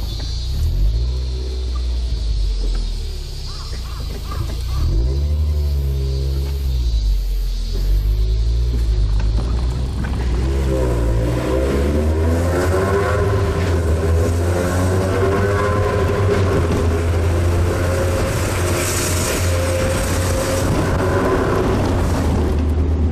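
Mazda NB Roadster's four-cylinder engine heard from the open cockpit while driving: the revs rise and fall a few seconds in, then climb again about halfway through and hold. From about halfway the car is in a tunnel, where engine and road noise sound fuller and echo.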